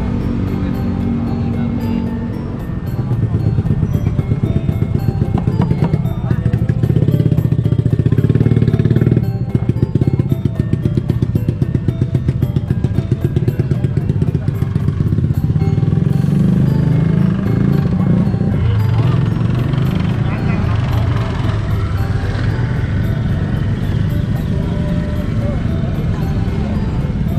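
Busy outdoor market din: vehicle engines running close by, mixed with people's voices and music.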